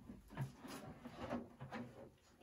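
Faint rustling and light knocks of things being handled: a clear plastic RC body shell in its plastic bag being picked up, in a few short bursts of noise.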